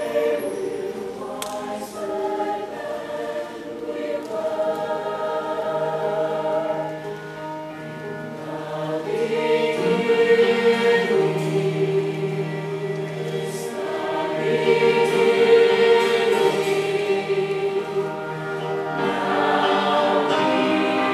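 Mixed-voice show choir singing held chords that swell louder twice, around the middle and again a few seconds later.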